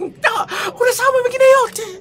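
A man's voice making a drawn-out vocal sound held on one pitch for about a second, with a short breathy onset.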